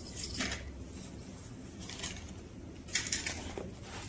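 Light handling noises from an RC model airplane and its radio transmitter being picked up and moved: two short bursts of soft clicks and rustling, one near the start and one about three seconds in.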